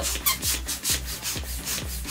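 Small plastic hand-held balloon pump being worked quickly, each stroke a short rush of air, about four strokes a second, as it inflates a latex balloon.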